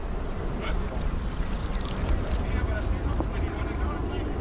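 Outdoor broadcast ambience: a steady low rumble, like wind on the microphone, with faint scattered sounds over it.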